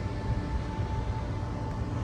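Uneven low rumble of outdoor noise, with a faint steady tone of background music held over it.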